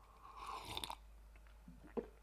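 A man sipping a drink from a mug: a single airy sip lasting under a second, followed by faint small mouth or mug sounds near the end.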